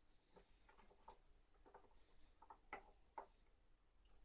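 Near silence broken by scattered faint, soft clicks and taps, the last two a little louder: hands working Tootsie Rolls around in thick batter in a ceramic mixing bowl.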